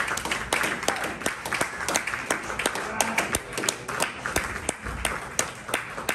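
A small audience applauding, the separate hand claps quick and irregular.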